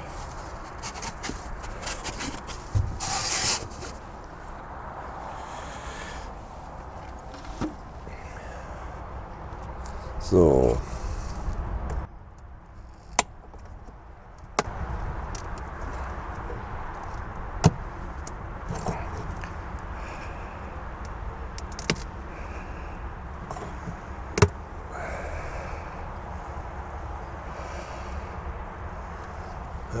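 Handling noises from opening a wooden leaf hive (Blätterstock): rustling and scraping as the felt insulation panel is taken out, then sharp clicks and knocks of wood and metal rings as the glazed inner window frame is worked open. A short falling sound about ten seconds in is the loudest moment.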